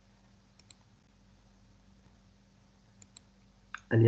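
Faint computer mouse clicks: a quick pair about half a second in and another pair about three seconds in, over a low steady hum. A voice starts right at the end.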